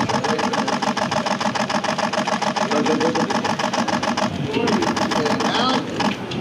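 A rapid, even mechanical rattle, about ten clicks a second over a steady hum, stops about four seconds in. Voices are heard under it.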